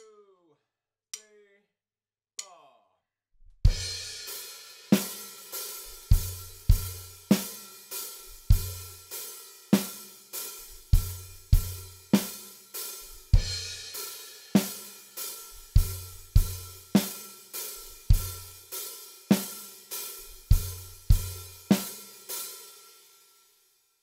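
Acoustic drum kit playing a steady kick-and-snare beat under open, slushy hi-hats, with a crash cymbal on the first stroke. The beat starts about four seconds in and stops shortly before the end, its last strokes ringing out.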